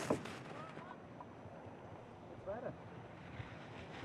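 Faint steady wind and ski-course noise, with a brief faint voice about two and a half seconds in.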